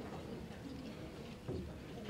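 Quiet room tone of a hall, with one short, soft low sound about one and a half seconds in.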